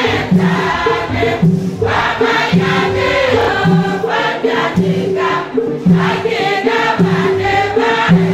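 A large women's choir singing a hymn in Tiv together, loud and continuous.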